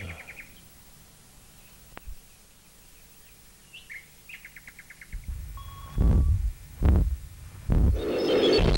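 Faint bird calls: a rising chirp and then a short, rapid run of chirps. Near the end come three or four heavy low thumps, louder than the birds.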